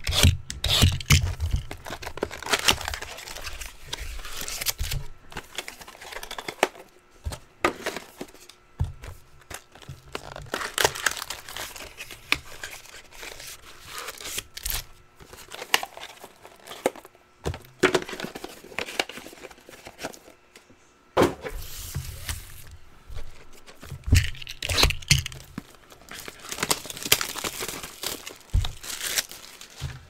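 A cardboard trading-card hobby box being torn open and its foil card packs crinkling as they are handled and stacked, in irregular bursts of tearing, rustling and light clicks.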